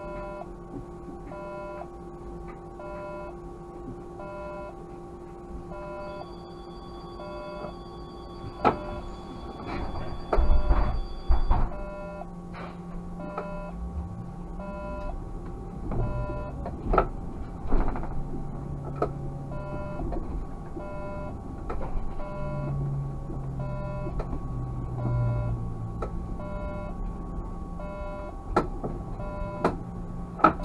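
Regular electronic beeping in the cab of a Škoda 30Tr SOR trolleybus, over a steady electrical hum, with a few clunks and knocks. About halfway through, a low whine rises as the trolleybus moves off.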